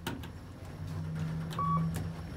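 Kone Ecospace traction elevator car: a click as a car-panel button is pressed, a low steady hum of the car, and a short single-tone electronic beep about one and a half seconds in.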